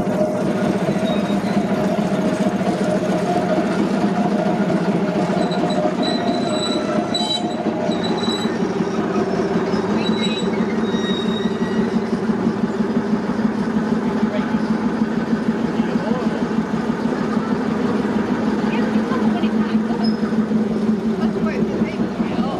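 Small diesel shunting locomotive's engine running with a steady note as it hauls a rake of passenger coaches slowly past, the coaches rolling along the track.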